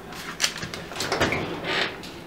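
Oven door opened and a metal cookie sheet slid onto the oven rack: a couple of light clicks, then a brief scrape of metal on the rack near the end.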